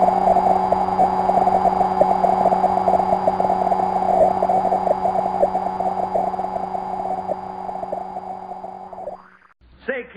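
Steady low electronic hum with a higher overtone and a crackle of static: the tone of an old television test-pattern signal. It fades out about nine seconds in.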